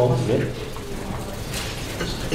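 The tail of a spoken word, then room tone: a steady low hum with a few faint clicks, while the room waits for a question.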